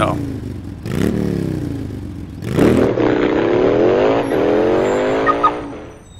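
Car engine accelerating away. The pitch climbs through one gear, then a longer second climb begins about two and a half seconds in, and the sound fades out near the end.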